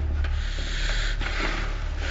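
Clear plastic cling film crinkling and rubbing in uneven swells as a person wrapped in it to a chair shifts against it, over a steady low hum.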